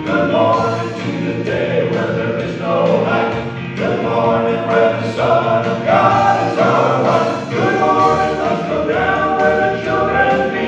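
Male gospel quartet of four voices singing together into handheld microphones, amplified through the PA.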